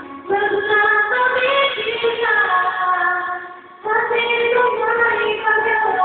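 A man singing a slow ballad into a handheld microphone: two sung phrases with a short pause for breath just before the four-second mark.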